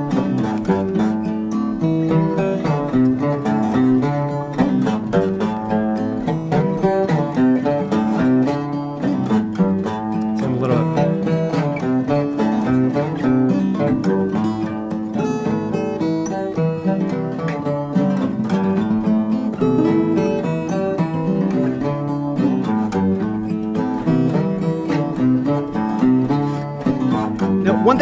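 Fingerpicked steel-string acoustic guitar playing a repeating desert blues groove, a short two-measure figure moving between A minor and D minor, continuous throughout.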